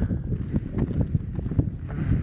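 Wind buffeting a handheld camera's microphone: a loud low rumble broken by irregular knocks.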